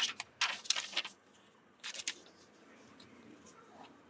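A stiff paper shirt pattern being unfolded and spread out on cloth, crackling and rustling mostly in the first second, with a softer rustle about two seconds in.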